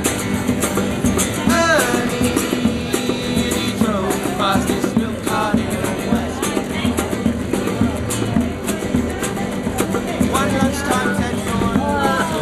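Instrumental break of an acoustic busking song: two acoustic guitars strummed together with a hand drum beating along in a steady rhythm, with a few short sliding notes over the top.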